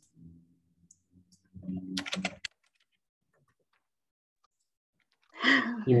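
Faint, brief voice sounds and a few clicks over a video-call line, then a stretch of dead silence. Near the end a woman breaks into laughter and starts to speak.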